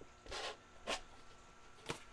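Trading cards and their packaging being handled: three short rasping scrapes, the last sharp like a click.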